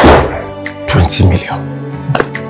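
A door thuds shut once at the very start, over steady background music.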